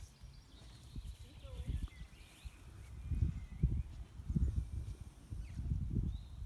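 Soft, muffled hoof thuds of a young pony walking on a rubber-chip arena surface, irregular and louder from about three seconds in.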